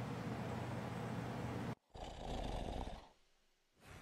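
Faint, steady room noise and hiss with no distinct event. It cuts out abruptly about two seconds in, returns briefly, then drops to dead silence for the last second.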